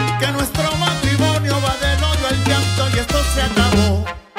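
A salsa track playing loudly, with a stepping bass line under percussion and melodic parts. The bass cuts out right at the end.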